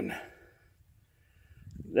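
A man's drawn-out exclamation trailing off, then a second of near silence, then his speech starting again.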